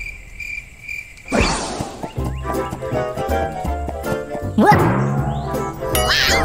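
Cricket-chirping sound effect: a few evenly spaced high chirps, about two a second, over an otherwise quiet moment, then a whoosh about a second in and bouncy background music with a steady beat for the rest.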